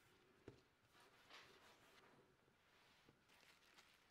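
Near silence, with one faint soft tap about half a second in.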